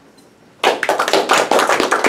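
A small audience applauding, the clapping starting suddenly about half a second in and going on steadily.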